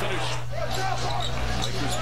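NBA game broadcast audio: a basketball bouncing on the hardwood court and a commentator's voice faintly over steady arena crowd noise.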